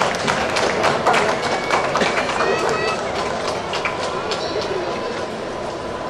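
Indistinct voices in a large hall, with scattered clicks and knocks that are densest in the first few seconds. A faint steady tone comes in about halfway through.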